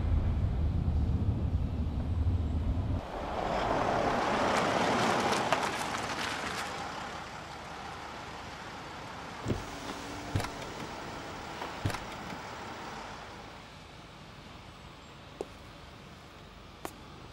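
A car pulling up on a street: low engine rumble at first, then a broad rush of the vehicle going by that swells and fades over a few seconds. It settles into a quieter steady hum, with a few sharp clicks in the middle and one near the end.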